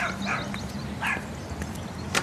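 A small dog yipping three times in short, falling calls over a steady outdoor background.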